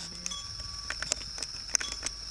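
Cattle walking on a dirt track, with a few light hoof knocks about halfway through and near the end, over a steady high insect trill.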